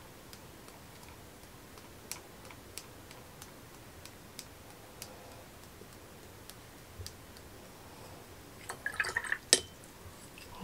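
Sparse, light ticks and taps of a watercolour brush working wet paint on paper, then a short cluster of louder clicks and rustling near the end as brushes are handled on the table, with one sharp click among them.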